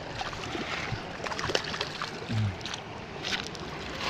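Steady rush of a shallow river flowing over gravel at the water's edge, with scattered light clicks and knocks. A brief low voice sound comes a little after two seconds.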